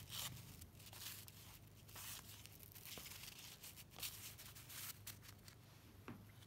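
Cardboard trading cards being slid across one another by hand: faint, short papery swishes of card stock rubbing, repeated several times, with a couple of light ticks.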